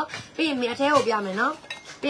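A woman talking over light clicks and clinks as the cap of an insulated water bottle is twisted off and set down.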